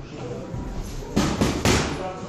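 Two boxing punches landing on focus mitts about half a second apart, sharp smacks with a short ring of the hall after each: a quick double jab, the 'postman's punch'.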